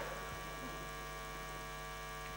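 Steady electrical mains hum, a buzzy drone made of many even steady tones, with no other sound over it.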